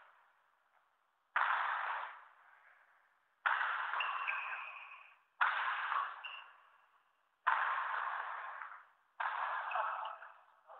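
Badminton racket smashing a shuttlecock five times, about every two seconds; each hit starts sharply and rings on for a second or so in the echo of a large sports hall.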